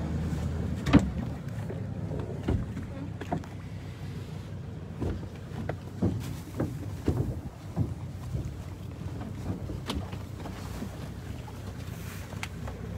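A boat's engine running with a steady low hum, with scattered knocks and thumps against the boat, the loudest about a second in.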